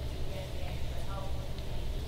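Faint, indistinct speech over a steady low rumble.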